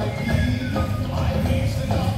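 Music of a nighttime fountain and fireworks show, with a high note falling in steps over the first second.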